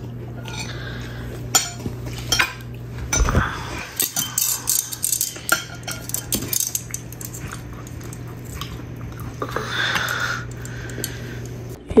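Metal serving tongs and a ladle clinking and tapping against ceramic plates and a bowl as food is served: a string of light, irregular clicks over a steady low hum.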